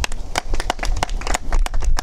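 Scattered hand clapping from a few people, irregular claps several times a second, over a low wind rumble on the microphone.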